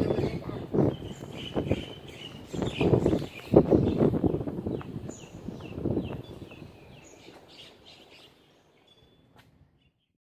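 Small birds chirping in short, repeated, falling chirps. Louder irregular low rumbles and knocks sound alongside them for the first six seconds, then the sound fades out just before the end.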